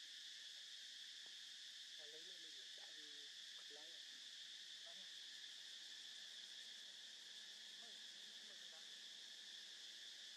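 Faint, steady chorus of insects: a continuous high-pitched buzzing drone. A few faint, short calls that bend in pitch sound about two to four seconds in and again near the end.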